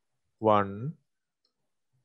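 A man's voice saying a single short word, "one", then silence.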